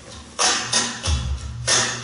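Flamenco guitar strummed in a slow 4/4 pattern of thumb down, thumb up, then a middle-and-ring-finger down-strum muted by the thumb. There are two sharp strums just over a second apart, with a deep bass thumb note between them.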